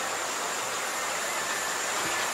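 Steady background hiss with a faint, high, steady whine running through it.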